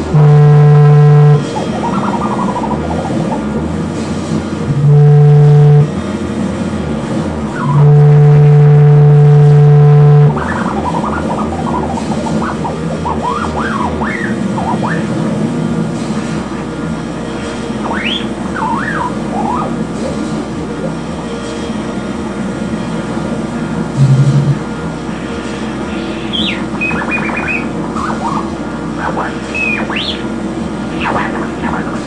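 Experimental drone-noise music: a loud, steady low tone cuts in and out three times in the first ten seconds over a dense, noisy bed. From about eleven seconds on, high pitches slide up and down above the bed, and the low tone returns once, briefly, near the end.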